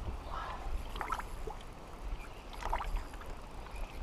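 A spinning reel being wound in on braided line under the load of a hooked pike, heard faintly over a steady low rumble of wind and lake water around a small boat.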